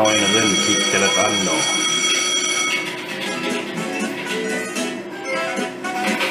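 Merkur slot machine's game audio: a bright, steady ringing chime for about the first three seconds over the machine's music, then the music carries on alone.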